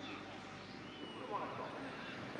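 Faint open-air ambience of a trotting racetrack, with a brief distant voice a little past halfway.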